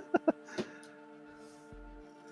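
A man's short laugh in a few quick bursts, then faint background music of steady held tones.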